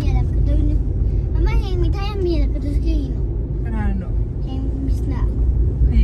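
Steady low road and engine rumble inside a moving car's cabin, with people's voices talking over it in short bursts.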